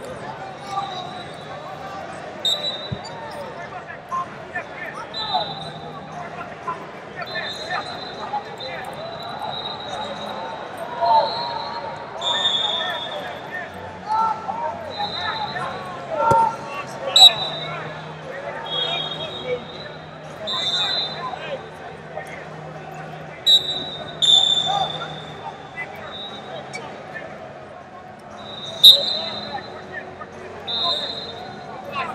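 Sports-hall ambience in a wrestling arena: background chatter of voices with frequent short, high-pitched squeals. A few sharp knocks stand out, the loudest near the end.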